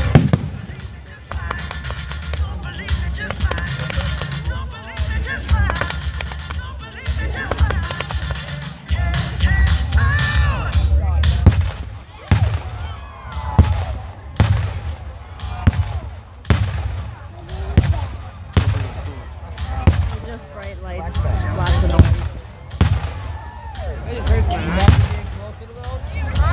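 Aerial fireworks shells bursting in a display, a steady string of sharp bangs about once a second in the second half, over music and crowd voices.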